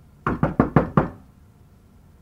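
Knuckles knocking on an apartment door: a quick run of about five knocks lasting under a second.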